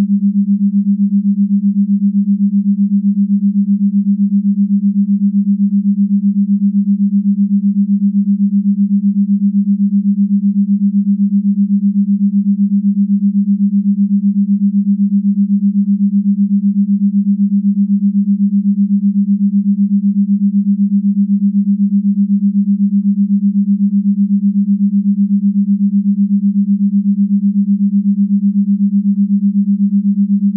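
Binaural beat brainwave tone: a single steady, low pure tone that wavers evenly and rapidly in loudness.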